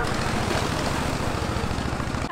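Motorboat engine running steadily with an even, rapid low pulse.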